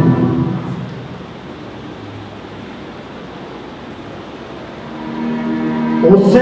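Voices chanting in unison trail off in the first second, leaving a few seconds of faint room noise; about five seconds in, a held chanted note comes back in and grows louder.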